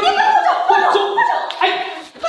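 A woman's loud, high-pitched wailing cries of pain and protest, wavering and jumping in pitch, starting suddenly and running almost without a break.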